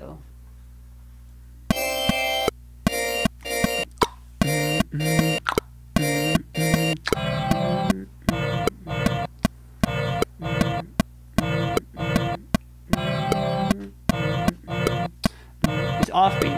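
Chopped church bell pad samples played back in a choppy pattern of short pitched stabs, each cut off abruptly with a click at the edit. About four seconds in, lower-pitched copies, shifted down an octave, join the higher ones.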